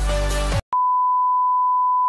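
Electronic background music with sliding bass notes cuts off about half a second in. After a brief silence, a single steady high-pitched electronic beep tone holds at one pitch.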